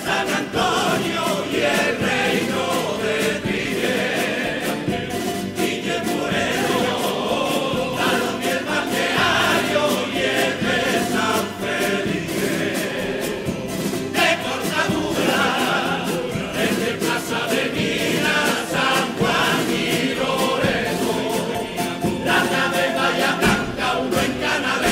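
Cádiz carnival coro, a large male chorus, singing in harmony over strummed guitars and bandurrias.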